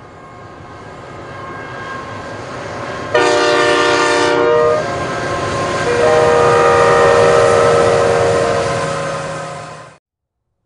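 Diesel freight locomotive approaching with its engine rumble growing louder, sounding a multi-note air horn: a loud blast starting suddenly about three seconds in, then a second, longer blast a second later that tails off. The sound fades out quickly at the end.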